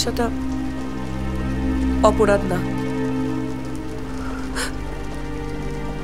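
Steady rain under a low, sustained film-score drone, with a few spoken words about two seconds in.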